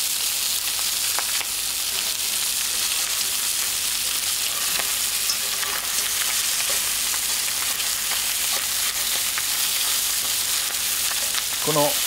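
Bone-in chicken pieces searing in hot olive oil in a heavy pot, sizzling steadily with occasional faint clicks. The skin is browning over high heat, the stage that builds the browned bits for the braise.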